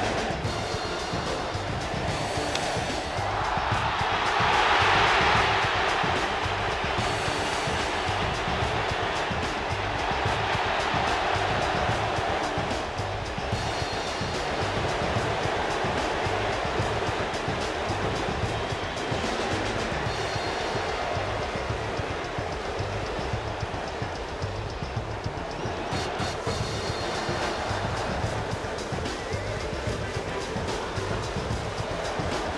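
Baseball stadium crowd with organized cheering music over a steady drumbeat. The cheering swells louder about four seconds in, then settles back to a steady din.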